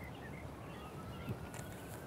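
Faint outdoor background noise: a low steady rumble, with a faint thin tone slowly rising in pitch and a few faint short chirps.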